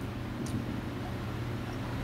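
Steady low hum and room noise picked up by the narrator's microphone in a pause between words, with one faint tick about half a second in.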